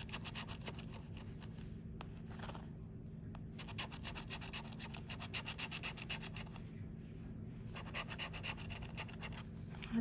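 Scratch-off lottery ticket being scratched with the edge of a bottle-opener-shaped tool: rapid scraping strokes rubbing off the latex coating, in three runs with short pauses between them.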